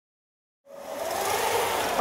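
Silence, then a steady background noise fading in about two-thirds of a second in and building up before speech begins.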